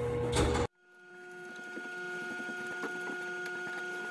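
Background music cuts off suddenly under a second in. A steady mechanical hum then fades up and holds, with a few faint taps from work on the wooden cabinet frame.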